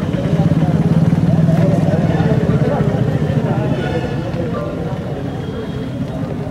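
A motor vehicle's engine running close by with a steady rapid pulse, loudest about a second in and then slowly fading, over faint background voices.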